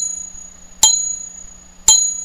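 A test tube stand struck twice with a chime mallet, about a second apart, each strike ringing and dying away. Each ring is a mix of several unrelated pitches at once rather than a single tone, with the highest-pitched one ringing longest.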